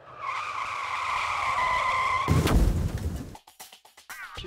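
A steady, high screech sound effect like skidding tyres, held for about two seconds, then cut off by a heavy low thump that rings on for about a second.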